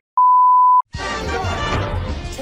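A steady 1 kHz test-tone beep, the tone that goes with television colour bars, held for about two-thirds of a second and cut off sharply. Music starts about a second in.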